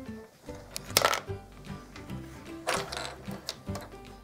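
Soft background music with light clacks of flat wooden game pieces being handled on a wooden spoon, one about a second in and more near three seconds.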